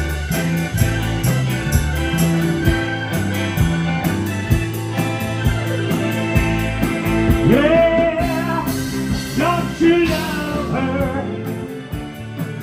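Live rock band playing with a steady beat: keyboard, guitars and drums over a walking bass line. A sliding melodic line comes in about seven and a half seconds in.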